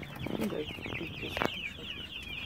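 A brooder full of newly hatched chicks peeping together without pause, a dense chatter of short, high, falling peeps. A single sharp click sounds about one and a half seconds in.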